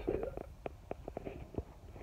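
Handling noise from a phone being moved around in the hand: a run of small, irregular knocks and rubbing on the microphone over a low rumble.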